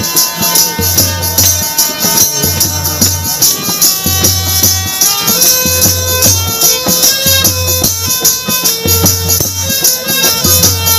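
Bengali murshidi folk music without singing: a plucked string melody over steady rhythmic jingling percussion and a low repeating beat.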